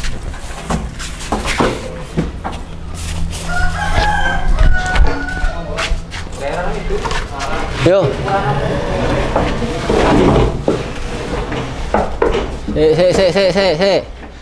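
A rooster crowing once, a few seconds in, over scattered knocks and thumps as a large bull shifts and turns on the straw-covered bed of a livestock truck.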